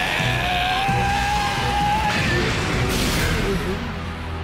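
Anime battle soundtrack: dramatic background music with a long, held cry from the Pokémon Zangoose as it is struck, and a crash about three seconds in.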